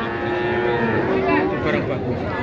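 A young calf mooing: one long, steady call that lasts almost two seconds.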